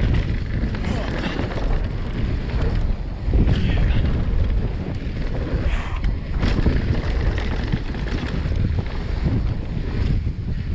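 Wind buffeting the GoPro Hero 7 microphone on a fast downhill mountain-bike descent, over the tyres of a Marin Alpine Trail Carbon 2 rolling on dirt and loose rock. A few sharp rattles of the bike over bumps, about three and a half and six and a half seconds in.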